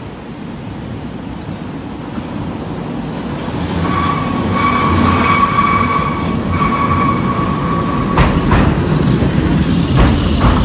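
Eizan Electric Railway electric train arriving at the platform, its rumble growing steadily louder. A steady high squeal is heard from about four seconds in until just past eight, followed by clacks of the wheels over the rail joints.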